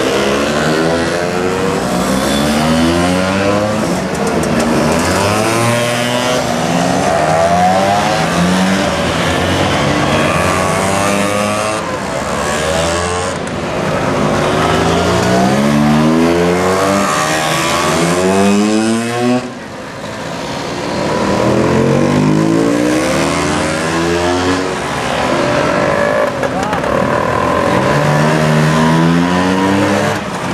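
Motor scooters riding past one after another, each small engine's pitch rising as it accelerates away, the revs of several overlapping. There is a brief lull about two-thirds of the way through before the next ones come by.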